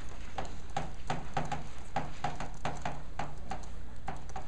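Chalk on a blackboard as words are written: a quick run of short taps and scrapes with each stroke, about four or five a second.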